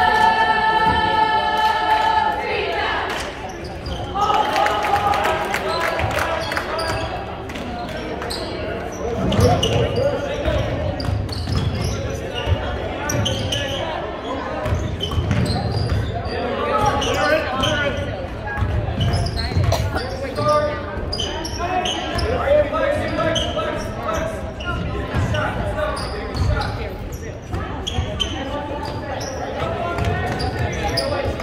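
Basketball dribbled and bouncing on a gym's hardwood floor, repeated thuds from about nine seconds in, under continuous shouting and chatter from players and spectators in a large echoing gym.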